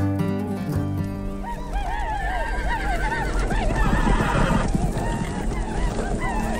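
Horses whinnying several times over a low rumble, as music fades out in the first second or so. A brief rushing noise comes about four seconds in.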